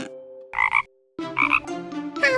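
A small cartoon frog croaking twice, two short croaks nearly a second apart.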